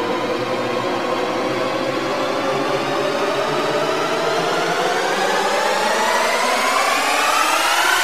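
A steady rushing drone with a pitch that climbs slowly and then faster, building up, and stops sharply at the end.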